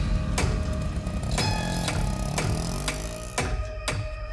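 Tense dramatic background score: a sharp percussive hit about once a second over sustained tones.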